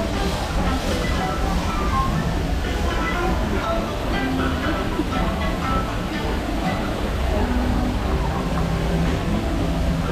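Music with some voices over the steady low rumble of the park's railroad train running.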